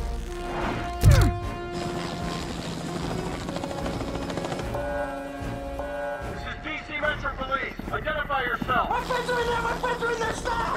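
Film score with long held notes and a heavy impact about a second in, with voices over the music in the last few seconds.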